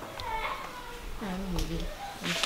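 Short wordless vocal sounds: a brief high-pitched call, then a longer, lower one that dips and rises.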